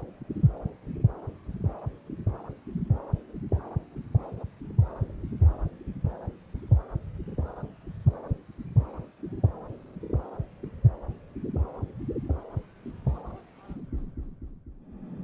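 Electronic music track built on a repeating low thump, like a slow heartbeat, about one and a half beats a second, over a steady hum.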